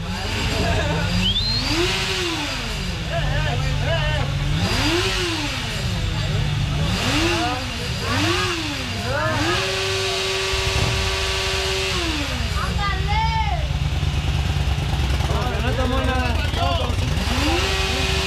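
A motorcycle engine revved repeatedly: its pitch climbs and drops back several times, is held high for about three seconds in the middle, and climbs and holds again near the end. Crowd voices are mixed in.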